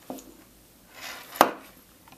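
Handling noise from a metal graphics-card heatsink being turned over in the hands: a soft knock near the start, a brief rustle, then one sharp knock about a second and a half in.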